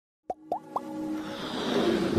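Animated logo intro sound effects: three quick pops, each sliding up in pitch, followed by a swelling whoosh that builds steadily.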